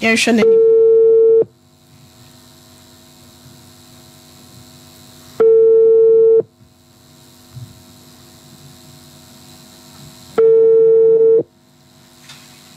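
Telephone ringback tone over the studio phone line: a steady single-pitch tone about a second long, sounding three times at five-second intervals, as an outgoing call rings at the other end.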